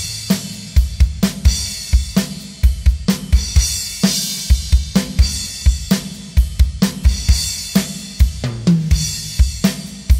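Acoustic drum kit with Sabian cymbals playing a steady rock groove at full tempo: even bass drum and snare strokes under hi-hat and cymbals, with crash cymbal accents twice and a short fill near the end.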